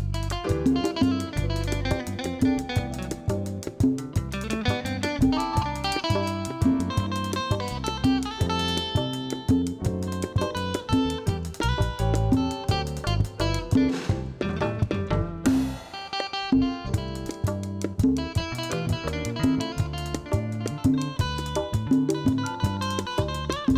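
Electro-acoustic guitar picking and strumming an instrumental melody, played live over a band with bass and percussion keeping a steady beat. There is a short break about two-thirds of the way through.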